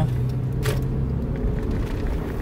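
Car interior noise while driving: a steady low engine hum with road rumble. There is one brief click about two-thirds of a second in.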